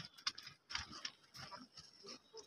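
Goats moving about on stony ground, with a few short, irregular scuffing and rustling noises.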